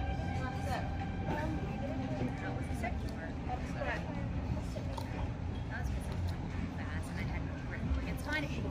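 Dockside harbour ambience: a steady low rumble with indistinct voices in the background. A held musical chord dies away within the first second.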